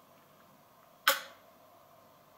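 A person sipping from a cup: one short, sharp sip about a second in, otherwise near silence.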